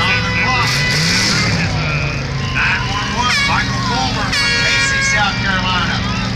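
Demolition derby cars' engines running and revving, with a rise in pitch about a second in. Over them come loud shouts and horn blasts from the crowd.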